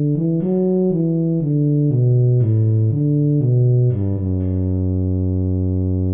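Tuba part played back from notation software in a synthesized tuba sound: a run of short low notes stepping up and down, then one long held low note from about four seconds in.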